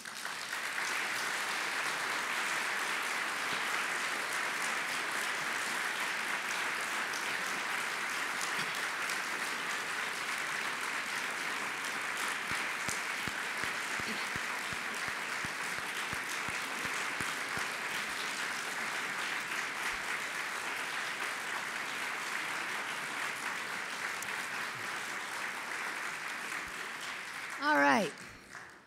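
Audience applauding at the end of a lecture: dense, steady clapping that holds for nearly half a minute and eases off slightly near the end.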